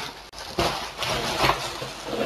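Plastic bubble wrap rustling as it is handled and pulled away, in several noisy swells starting about half a second in.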